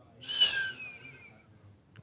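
A short, breathy whistle that falls slightly in pitch, loudest at the start and fading over about a second.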